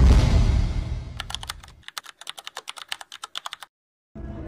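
A loud low whoosh, then a fast run of keyboard-typing clicks, about ten a second, that stops suddenly: an edited-in typing sound effect.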